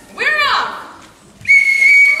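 A referee's whistle blown in one steady, shrill blast starting about one and a half seconds in, after a short high call from a voice in the first second.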